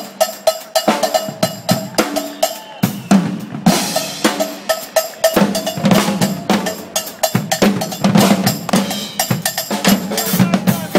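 A drum kit and congas played together in a fast, busy groove, with a repeated high-pitched ringing strike in the first few seconds; the playing thickens from about three seconds in.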